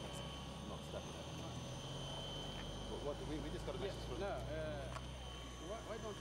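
Faint, indistinct voices over a steady low hum, with no sudden sounds.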